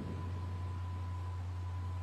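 Steady low electrical hum under a faint hiss, with a faint thin steady tone that fades out about three-quarters of the way through.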